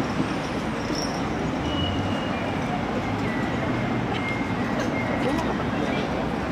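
Steady city street noise of road traffic, with people talking in the background.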